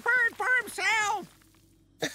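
Cartoon parrot's voice squawking in a quick run of short, high-pitched cries that stop about a second in, followed by near silence.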